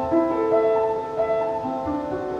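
Old A-bombed upright piano being played: a melody held over a repeating broken-chord figure in the bass, the notes sustained and ringing into each other.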